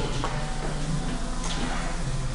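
Steady low machine hum with a faint click about one and a half seconds in.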